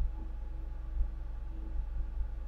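A steady low hum of background noise with a faint steady higher tone above it, and no distinct event.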